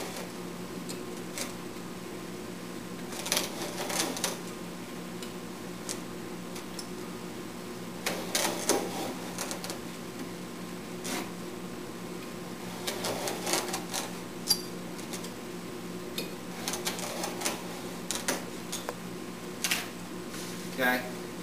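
A hand veneer saw cutting oak veneer along a straight edge, drawn back and forth in several groups of short rasping strokes, over a steady low hum.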